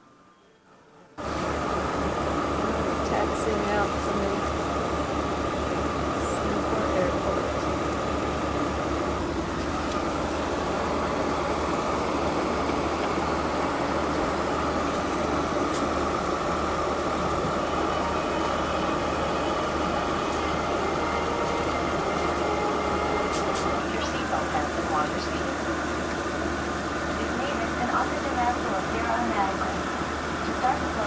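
Steady low hum inside a parked airliner's cabin, with indistinct voices in the background. It cuts in suddenly about a second in, after near quiet.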